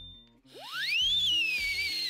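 A whistle-like noisemaker sounds one long call that starts about half a second in: it sweeps steeply up to a high pitch, then sinks slowly with a breathy hiss. Soft background music plays underneath.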